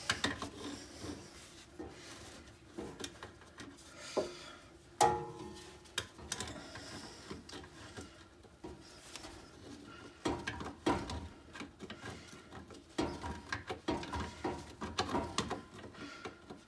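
Hand tools working on steel rear-axle parts: large Channellock pliers gripping and turning a knurled locking ring, then a wrench or ratchet clicking, with irregular metal clicks, scrapes and knocks and one short ringing clink about five seconds in.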